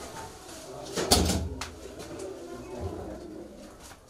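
Low, repeated cooing calls from a bird. About a second in there is a loud thump with a crack, and a short click follows just after.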